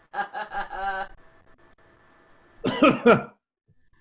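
Human laughter: a short pulsing run of laughs near the start and a louder burst of laughter near the end.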